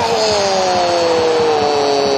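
A long, drawn-out 'ooh' of dismay held without a break and slowly falling in pitch, over steady stadium crowd noise, as a shot narrowly misses the goal.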